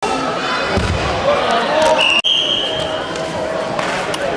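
Voices talking in a large sports hall, with a low thud about a second in and a referee's whistle about halfway through, held for under a second.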